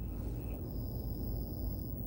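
Steady low rumble of a car's engine and tyres heard from inside the cabin while it rolls slowly along, with a faint high-pitched steady whine for about a second in the middle.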